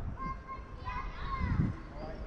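Children's voices calling out at a distance: a few short, high, thin calls over low outdoor background noise.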